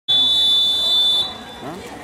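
Electronic race-start signal at a swimming pool: one loud, steady, high beep of about a second that starts a backstroke race and cuts off suddenly, followed by voices.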